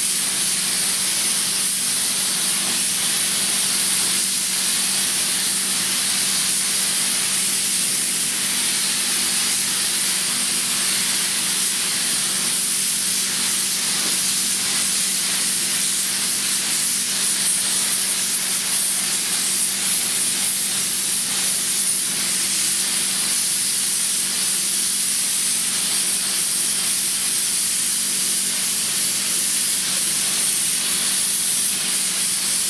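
Compressed-air gravity-feed paint spray gun hissing steadily as it sprays engine paint. A steady low hum runs underneath.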